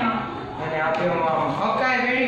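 Speech: people talking back and forth.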